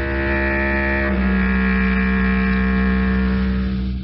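Closing music of a radio drama: sustained low orchestral chords with bowed strings, moving to a new chord about a second in and fading out near the end.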